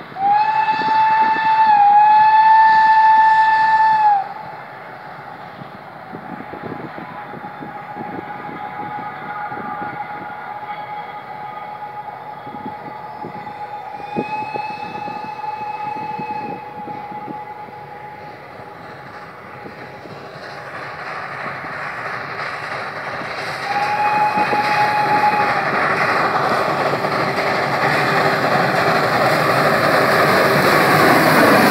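Narrow-gauge steam locomotive sounding its steam whistle as it approaches a level crossing: a long blast of about four seconds at the start, a second blast about fourteen seconds in, and a shorter one near the end. In the last third the locomotive's running and exhaust noise grows steadily louder as it draws near.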